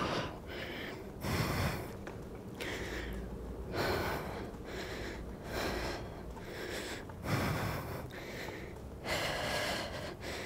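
A woman breathing hard from exertion while pedalling a recumbent exercise cycle at high intensity: heavy, wordless breaths roughly every second and a half.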